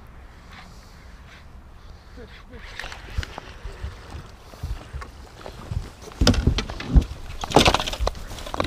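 A musky being played from a boat on a bent rod: dull thumps on the boat and short exclamations from the anglers, with loud noisy bursts about six seconds in and again near the end.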